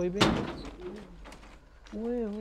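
A man's shout of "oye", then a single sharp bang about a quarter second in that rings out briefly, with crickets chirping faintly in the background.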